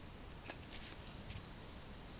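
Handling noise from a moving camera: three light clicks in the first second and a half over a faint steady hiss.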